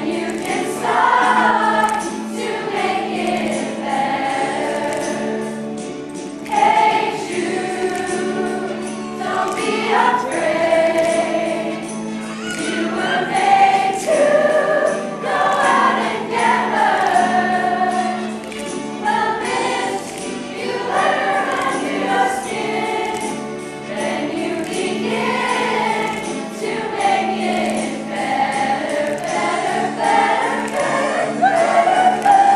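Large mixed high school choir singing an upbeat pop number in full voice, with a light jingling percussion beat underneath.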